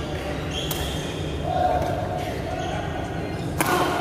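Badminton rackets striking a shuttlecock during a rally in a large, echoing sports hall: a sharp hit under a second in and another near the end.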